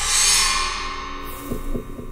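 Logo sting for an outro: a bright, shimmering swell of ringing, chime-like tones that slowly fades, with two short low hits near the end.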